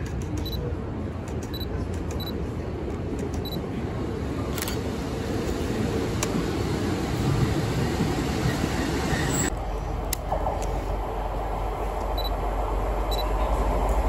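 Class 150 Sprinter diesel multiple unit drawing into the platform, a low rumble growing louder as it nears, with a couple of sharp clicks. About two-thirds of the way through, the sound cuts to a Class 175 diesel multiple unit approaching, a steady low drone building toward the end.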